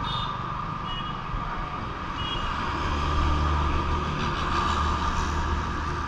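Road traffic: a heavy vehicle's engine rumble that grows louder about three seconds in, with three short high beeps, about a second apart, in the first half.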